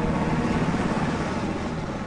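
Chinook helicopter running: a steady, fast rotor beat over engine noise.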